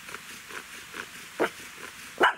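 Bow drill squeaking as the spindle turns in the willow fireboard, faint and repeating with each stroke of the bow, about twice a second. A louder, sharper sound comes about one and a half seconds in. The drill is building heat and grinding dust into the fireboard's notch.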